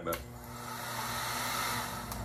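Handheld paint-stripping heat gun switched on, its fan blowing a noisy hiss of hot air that grows louder over the first second and a half.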